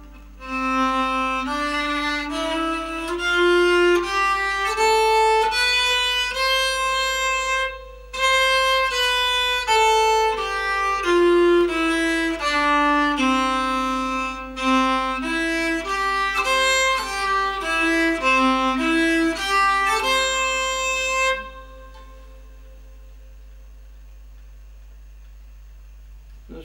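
Nyckelharpa bowed in a slow melodic run of single notes, stepping up in pitch and back down, with a short break about 8 seconds in. The playing stops about 21 seconds in, leaving a faint hum.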